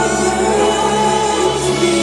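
Four-voice male vocal group singing held notes in close harmony, backed by a live band.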